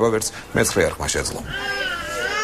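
A voice speaking briefly, then, about a second and a half in, a drawn-out animal call begins, dipping and then rising a little in pitch.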